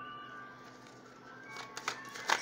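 Faint background music with steady held tones. Near the end, the quick snapping clicks of a tarot deck being shuffled by hand start up.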